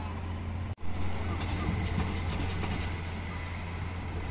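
Diesel engine of a loaded Mitsubishi Canter dump truck running steadily in a river crossing, heard at a distance as a low hum. The sound cuts out briefly just before one second in, then resumes.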